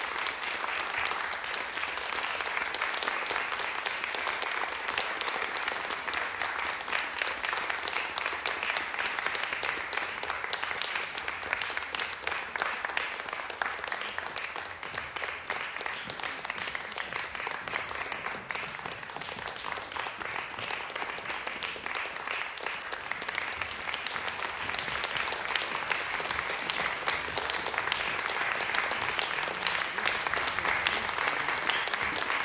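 Audience applauding steadily, dense clapping that eases off a little in the middle and picks up again near the end.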